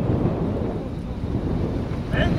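Wind buffeting the microphone: a steady low rushing rumble with no distinct events.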